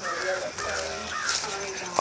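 A bird calling several times in short calls.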